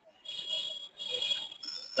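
Faint hiss with thin, steady high whistling tones from an open audio line, in two stretches split by a short break. Typical of a remote caller's line opening up just before they speak.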